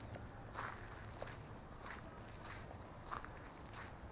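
Soft footsteps of a person walking on the loose dirt of a dug-up street, about one step every 0.6 s, faint.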